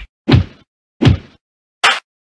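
Three punch sound effects, sharp whacks about three-quarters of a second apart with dead silence between them; the third is cut off abruptly.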